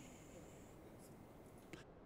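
Near silence: faint room tone, with a faint high-pitched whine in the first second and a tiny click near the end.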